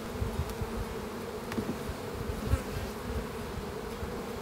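Honey bees buzzing in a steady hum over an open hive. A few faint knocks come from the hive tool and wooden frames as a frame is pried loose and lifted out.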